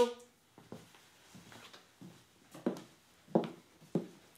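A few soft footsteps on a wooden floor, separate steps spread out with the clearest ones in the second half.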